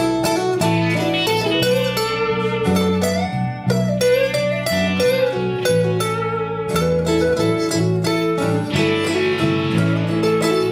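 A band playing live, with no vocals in this stretch: strummed acoustic guitar chords under a guitar lead line with bending notes, in a slow blues.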